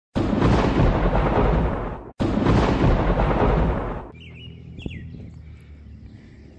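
Thunder sound effect: two loud claps of thunder, each about two seconds long, the second starting right as the first cuts off, then a drop to quieter background sound.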